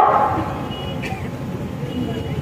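The amplified voice's echo dies away over the first half second. It leaves a steady low rumble of background noise, with a few faint high tones over it.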